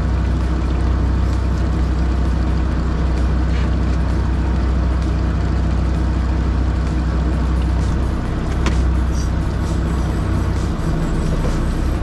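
A fishing boat's engine running steadily as a deep, even drone, with a couple of faint ticks about three and a half and nine seconds in.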